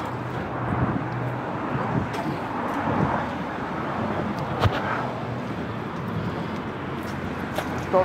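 Steady street background noise with a sharp knock a little past halfway through.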